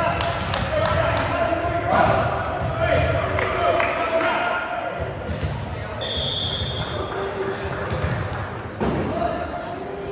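Indoor volleyball play echoing in a gymnasium: players' and spectators' voices calling and shouting, with repeated ball hits and bounces on the hard floor. A brief high-pitched tone sounds about six seconds in.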